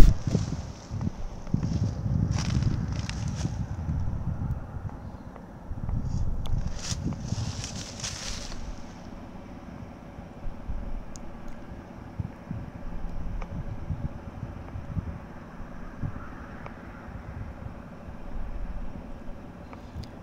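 Wind buffeting the microphone: an uneven low rumble with two brief hissy gusts in the first half.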